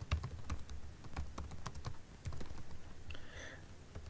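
Typing on a computer keyboard: a run of quick, irregular keystrokes as a short phrase is typed.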